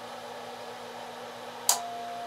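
Icom IC-7300 CW sidetone: a click, then a single steady beep that starts near the end as the transceiver is keyed down on CW from its microphone's up/down button, putting out a carrier for tuning up a Heathkit SB-200 amplifier. A faint steady hum lies underneath.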